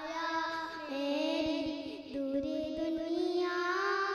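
A young girl singing a poem into a microphone, holding long notes that slide up and down in pitch, over a faint steady hum.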